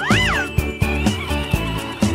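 Background music with a steady beat. Near the start, a short squeal rises and then falls in pitch over it.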